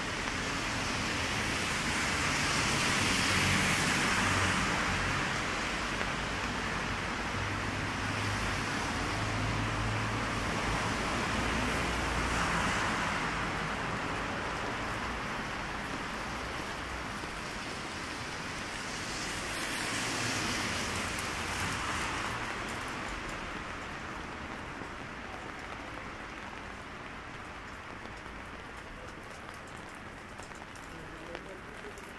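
Rain falling on a city street, with cars passing on the wet road: the tyre hiss swells up and dies away three times, about three, twelve and twenty seconds in, and the sound grows quieter toward the end.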